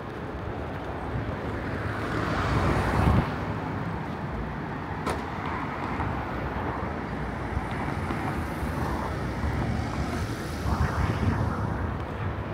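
City road traffic: cars passing close by on the street, one swelling past about three seconds in and another near the end, over a steady traffic hum.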